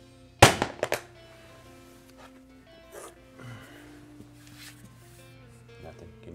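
Hammer dropped onto Southwind luxury vinyl plank flooring pieces: one sharp crack about half a second in, then two lighter knocks.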